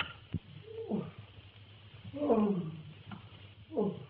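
An animal calling: three drawn-out cries that fall in pitch, one about a second in, the loudest about two seconds in, and a third near the end, with a sharp click just after the start. It is heard on an old, muffled film soundtrack.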